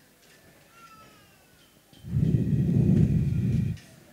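A person's loud, rough, low groan lasting almost two seconds, starting about halfway through after a quiet stretch.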